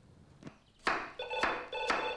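A kitchen knife chopping carrots on a chopping board, several sharp chops. About a second in, a telephone starts ringing with a British-style double ring, two short bursts close together.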